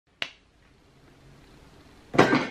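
A single sharp finger snap about a quarter second in, followed by faint room tone.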